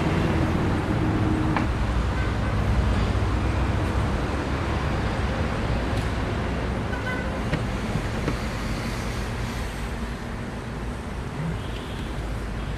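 Steady rumble of a car and road traffic heard from inside the car's cabin, with a few faint clicks.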